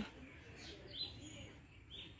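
Faint bird chirps over quiet outdoor background noise, one short chirp about halfway through and another near the end.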